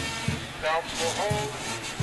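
A drum beating steadily, about three beats a second, over stadium background noise, with a few sliding pitched tones near the middle.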